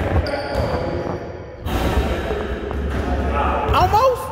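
A basketball being bounced on the hardwood floor of a large gym, a series of dull thumps.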